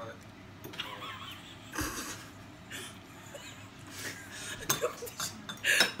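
Metal forks clinking and scraping against ceramic bowls as noodles are twirled and lifted, in scattered light clicks, with faint voices.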